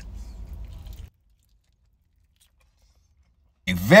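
Near silence: a faint low hum for about a second, then the sound cuts off to dead silence. Speech begins near the end.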